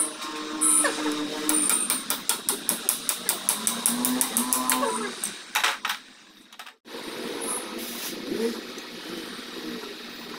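A hand wrench clicking in a quick regular run, about five clicks a second, as it works a fastener on a Royal Enfield engine. A cow moos in the background.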